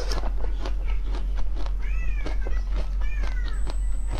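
Chewing and crunching a hard piece of basil-seed ice, with sharp crackles and clicks throughout. About two and three seconds in come two short high squeaks that rise and then fall in pitch.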